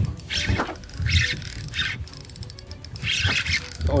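Spinning fishing reel ratcheting in runs of rapid clicks, with short hissing bursts between, as a hooked jack crevalle pulls against the line.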